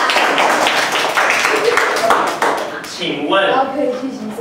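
Classroom noise of many children talking at once, mixed with a dense patter of clapping or tapping. Near the end this gives way to a single voice speaking.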